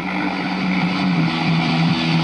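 A steady droning note with overtones over a hiss, slowly swelling louder: the opening drone of a heavy metal track.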